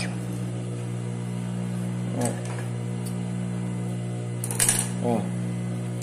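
Mitsubishi DB-130 industrial lockstitch sewing machine with its motor running, a steady low hum, while a few brief metallic clicks and clinks sound about two seconds in and again near the end.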